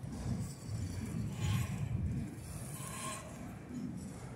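Freight train of autorack cars rolling slowly past, its wheels giving a low rumble on the rails, with two brief scraping sounds from the running gear.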